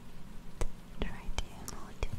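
Soft whispering close to a microphone, broken by four sharp clicks less than half a second apart, from just after the start to near the end.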